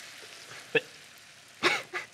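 Octopus sizzling on a hot waffle iron: a faint, steady crackling hiss, with a brief vocal exclamation near the end.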